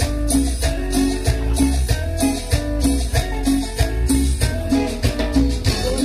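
Cumbia band music: an instrumental stretch with guitar and bass over a steady, even beat.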